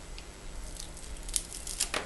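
Small scissors snipping through a white craft strip, a few short quiet snips in the second half.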